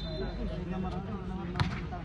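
Crowd voices around a volleyball court, with one sharp smack about one and a half seconds in: the volleyball being struck on the serve.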